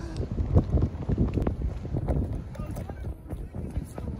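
Wind buffeting an iPhone's microphone: a steady low rumble broken by many irregular crackling knocks.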